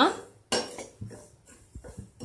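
Steel spoon stirring semolina in a metal pan, with several short clinks and scrapes of the spoon against the pan, starting about half a second in. The semolina is being dry-roasted.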